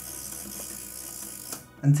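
Film-advance crank of a Yashica Mat twin-lens reflex camera being wound, winding freshly loaded 120 roll film on to the first frame; a steady mechanical whirr that stops about one and a half seconds in as the crank reaches its stop.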